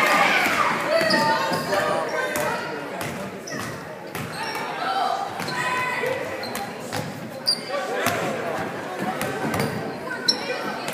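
Indoor basketball game: a ball bouncing on a hardwood gym floor, amid indistinct shouts and chatter from players and spectators, with short high squeaks and the echo of a large gym.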